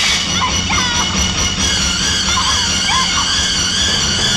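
Film background score holding a sustained high chord, with several short high cries or yells over it.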